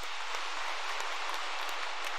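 Congregation applauding: many hands clapping at a steady level.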